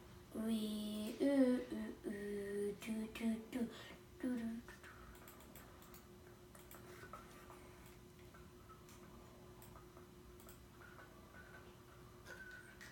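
A child humming a short tune of held notes for about four seconds, then stopping; after that only a quiet room with a faint steady tone and a few faint small clicks.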